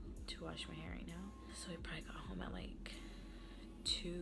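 A woman talking quietly, close to a whisper, into the microphone.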